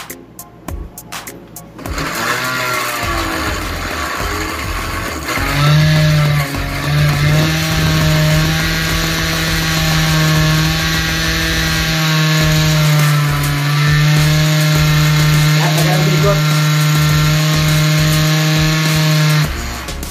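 Countertop blender running on chunks of orange and pineapple with mint leaves. It starts about two seconds in, wavers in pitch for the first few seconds, then runs with a steady hum until it is switched off just before the end.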